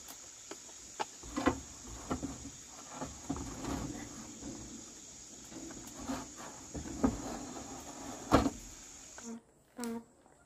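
A corrugated roofing sheet is handled on a wooden coop frame, giving scattered knocks and scrapes, with the loudest knock about eight seconds in. Insects chirr steadily on a high, even tone behind it. Everything cuts off shortly before the end.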